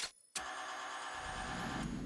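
A cartoon sound effect of a small hand-held propeller gadget whirring with a steady, motor-like hum. It starts after a brief silence and grows slightly fuller toward the end.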